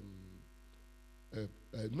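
Steady low electrical mains hum, heard plainly in a pause between a man's hesitant filler sounds.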